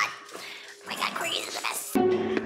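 A corgi whining and yipping in short, high calls that slide upward.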